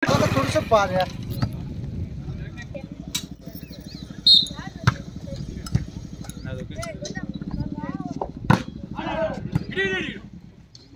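Players and spectators shouting over an outdoor volleyball rally, with several sharp slaps of hands striking the ball; the loudest comes a little past eight seconds in. A brief high-pitched tone sounds about four seconds in.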